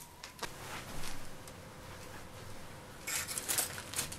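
Hands handling a foil-covered sculpture: faint rustling and a few light clicks, then a louder stretch of crinkling near the end.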